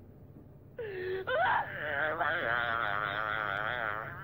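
A voice wailing in a high, wavering tone with strong vibrato, coming in about a second in, sliding upward and then holding the quivering note.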